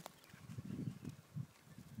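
Faint, irregular low knocks and rumbles of a mobile phone being handled as its back cover is worked off to reach the battery.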